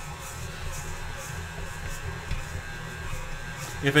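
Electric stand mixer running steadily with a low motor hum while it mixes a stiff, slightly sticky pizza dough.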